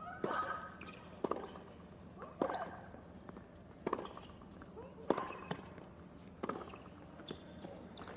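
Tennis rally on a hard court: a serve and then racquet strikes on the ball about every second and a quarter, some six hits in all, with lighter ball bounces between them. A player grunts with some of the hits.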